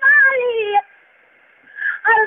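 A man singing a naat, unaccompanied, holding one long note that slides down in pitch and breaks off about a second in. After a short pause the voice comes in again near the end.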